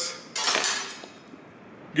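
Metal spatula scraping and clinking on the steel teppanyaki griddle, in one short burst about half a second in that fades away.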